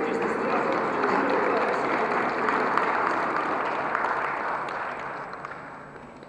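Audience applauding in a large hall, a steady clapping that dies away near the end.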